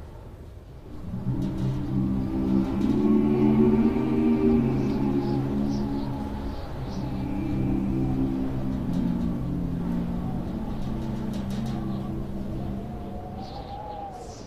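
Choir singing slow, long-held chords over a low rumble. The chords enter about a second in and move to a new chord about halfway through, then fade near the end.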